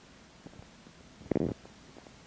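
A Groenendael (Belgian Sheepdog) gives one short, low grumble about a second and a half in.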